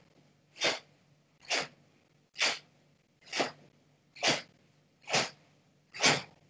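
A karateka's sharp exhalations, one with each punch of a repeated drill: about seven short breathy bursts, evenly spaced, a little under a second apart.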